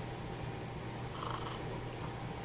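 A quiet sip of thick, hot champurrado from a mug, a little past a second in, over a steady low hum.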